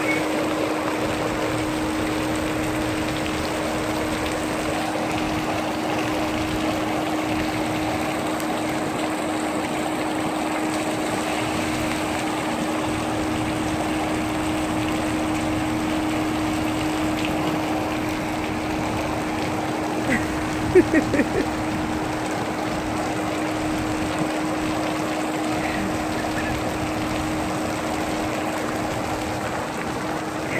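Steady rush and splash of water from a splash pad's spray jets and falling water, over a constant low hum. A few short, louder sounds stand out about two-thirds of the way through.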